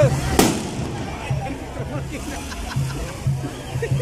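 A single sharp bang from a festival skyrocket (cohete) about half a second in, over band music with a repeating low bass line.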